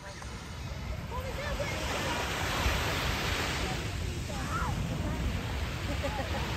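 Red Arrows BAE Hawk jets passing over in formation: a broad jet roar that builds over the first couple of seconds and then holds steady.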